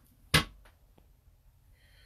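A single sharp click or knock about a third of a second in, followed by two faint ticks.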